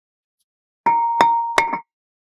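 A big hammer striking a seized cross-drilled brake rotor on a Mercedes E63 AMG's front hub three times in quick succession. The rotor rings with a clear metallic tone between the blows. The rotor is rusted fast to the hub.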